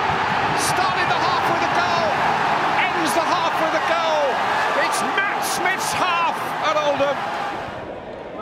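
Football stadium crowd roaring and cheering a home goal, with many individual shouts and whoops rising out of the roar; it dies down near the end.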